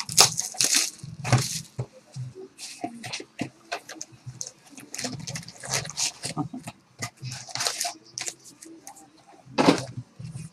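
Plastic shrink wrap crinkling and tearing as it is stripped off a trading card box, then the cardboard box opened and foil card packs rustled and set down, an irregular run of crackles with a few soft knocks. The loudest rustle comes just before the end.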